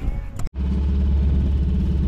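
An engine running steadily with a loud, even low hum, starting abruptly about half a second in.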